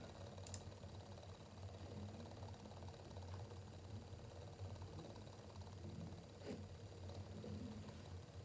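Quiet room tone: a low steady hum with a few faint clicks.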